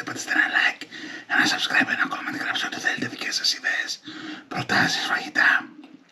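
Only speech: a man talking in a soft voice, with brief pauses.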